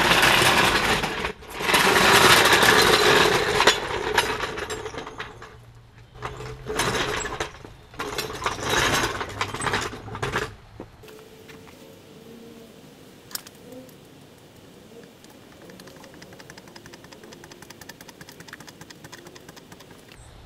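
Red steel floor jack rattling in loud, uneven bursts as it is rolled over an asphalt driveway into position, then much quieter for the second half while it lifts the car, with faint, even ticking and one sharp click.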